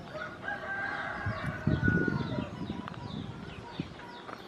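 A rooster crowing once, a long call of about two seconds, over small birds chirping repeatedly, with a low irregular rumble in the middle.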